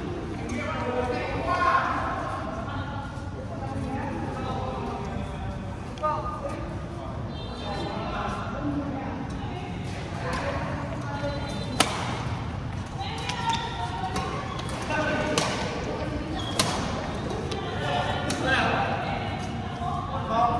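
Badminton rackets striking a shuttlecock: a series of sharp smacks, mostly in the second half, the loudest about twelve seconds in, over steady background chatter of voices.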